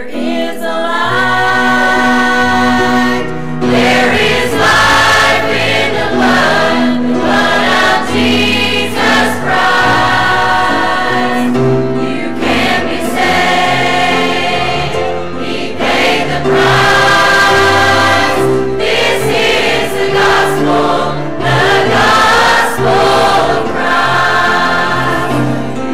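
Women's church choir singing a gospel hymn with instrumental accompaniment, held notes over a steady bass line.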